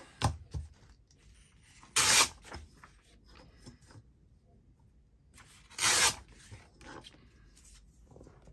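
Printed paper torn against the edge of a metal ruler: two short tears, about two seconds in and about six seconds in, with a smaller one at the start and faint paper rustling between.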